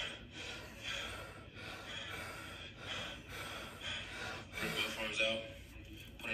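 A run of deep, audible breaths, in and out about once a second, taken on the instruction to breathe five times.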